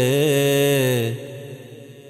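Male voice singing a devotional manqabat, holding the last note of a line with a slight waver. The note trails off about a second in.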